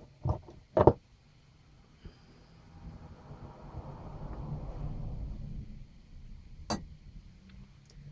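Handling noise from tools being moved about on a workbench: a soft rustling shuffle that swells for a few seconds in the middle, with a couple of sharp taps early on and one sharp click later.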